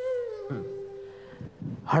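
Background score of a TV drama: a single held note that runs under the end of a man's line, then steps down to a lower note about half a second in and fades out before the next line begins.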